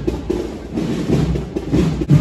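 Drums of a Holy Week procession band playing, with a sharper stroke near the end.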